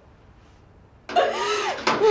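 Quiet room tone for about a second, then a loud, high-pitched human outburst without words breaks in abruptly, its pitch sliding up and down. A sharp click comes just before the end.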